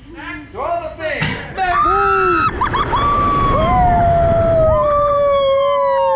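People screaming as a reverse-bungee slingshot ride launches them into the air, with wind rushing over the microphone. From about two seconds in the screams are long and held, the longest sliding slowly lower in pitch.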